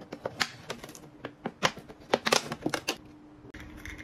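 Thin plastic water bottle being cut apart by hand, giving an irregular run of sharp crackles and clicks that stops about three seconds in.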